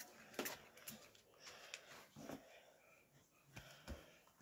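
Near silence, broken by a few faint, short clicks and rustles as a handheld phone is moved about.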